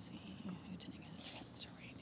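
Faint whispering from young children, with a few soft hissing sounds about a second in.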